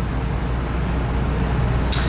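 A steady low hum under an even hiss, with a short sharp sound near the end.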